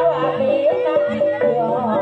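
Live Javanese jaranan accompaniment: a wavering, ornamented melody line over a steady held tone and a low rhythmic accompaniment.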